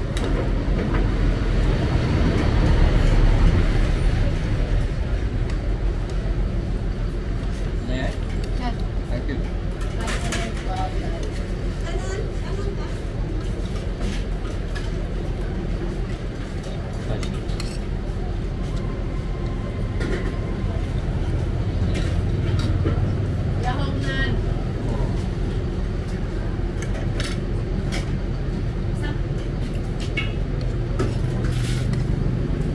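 Bus terminal ambience: a steady low rumble of bus engines, swelling a few seconds in and again past the middle, under indistinct background voices, with occasional clinks of cutlery on plates.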